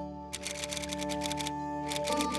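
Rapid typing sound effect of key clicks in quick succession, pausing briefly and starting again near the end. It plays over background music with sustained notes.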